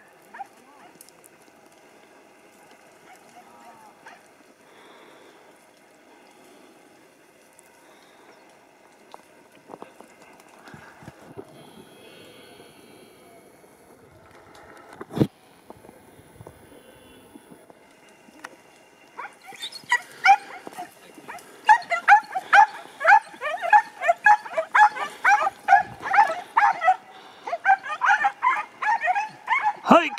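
Podenco hounds giving tongue in the scrub: after a quiet stretch with one sharp knock about halfway, a fast run of high yelping barks starts about two-thirds of the way in and keeps going, two or three a second. It is the cry of the pack working a rabbit's scent.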